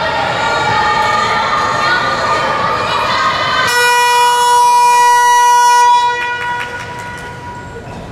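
Crowd voices shouting in a gymnasium, then about halfway through a scoreboard buzzer sounds one steady horn-like tone for about two seconds before cutting off, signalling a stoppage of play in a handball game.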